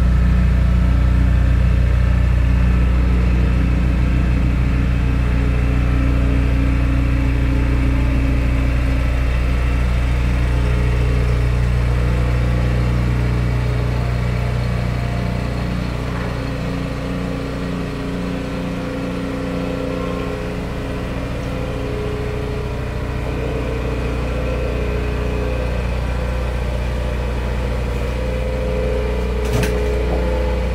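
Background music: a slow ambient track of deep, held drone notes, with higher held notes coming and going.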